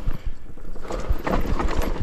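Mountain bike rattling over a rough trail: dense, irregular knocks and clatter from the bike and tyres hitting roots and rocks, over a steady low rumble.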